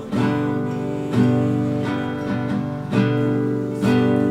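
Nylon-string classical guitar strummed in a pattern of two down-strokes, two up-strokes and two down-strokes, the chords ringing on between strokes.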